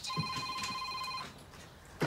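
Mobile phone ringtone: a steady electronic ring of several high tones that stops a little over a second in, as the call is answered.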